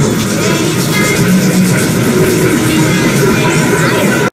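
Soundtracks of several logo-animation videos and a children's song playing at once, a dense, continuous jumble of overlapping music and effects.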